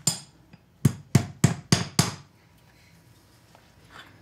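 Farrier's hammer striking a steel horseshoe on a horse's hoof: six sharp strikes in about two seconds, the last five in quick, even succession.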